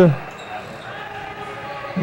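Futsal ball knocking on a wooden court floor, faint against the background noise of a sports hall.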